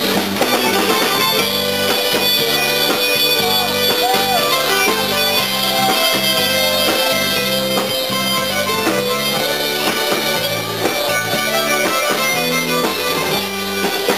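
Live band playing an instrumental passage of a Croatian pop song: electric guitar and a repeating bass line under a sustained, reedy lead melody, with no vocal.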